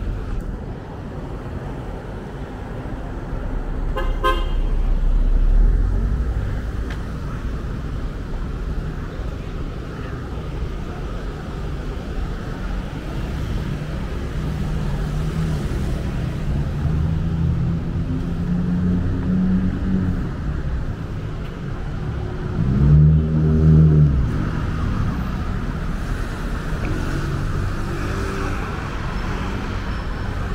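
City street traffic, with cars and motorcycles running past. A short, high car horn toot sounds a few seconds in, and later a louder, lower-pitched horn honks twice in quick succession.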